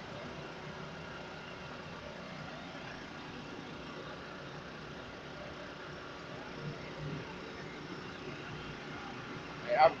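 Steady drone of idling vehicle engines from a line of parade-float trucks, with no distinct events. A man's voice starts near the end.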